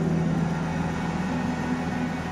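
Live rock band holding a sustained low note: electric guitar and bass ringing steadily through the amplifiers, fading a little about halfway through.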